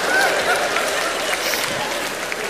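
Studio audience applauding, with a few voices from the crowd mixed in.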